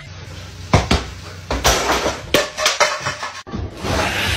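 A run of about six sharp knocks and clatters of hard objects between one and three seconds in. The sound cuts off abruptly a little past three seconds.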